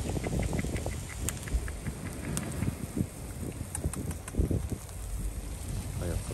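Wind buffeting the microphone over the wash of sea surf breaking below, with a few faint short ticks scattered through.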